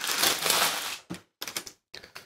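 Tissue paper rustling and crinkling as it is pulled back inside a shoebox: a dense crinkle for about the first second, then a few short crinkles.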